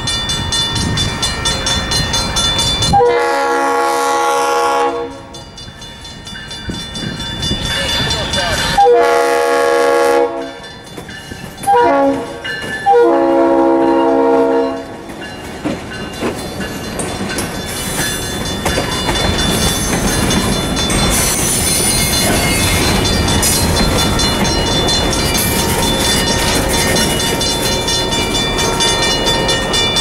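EMD GP18 diesel locomotive's multi-tone air horn sounding the long, long, short, long grade-crossing signal, the standard warning for a road crossing ahead. Then the train rolls past: locomotive followed by freight cars, wheels rattling on the rails.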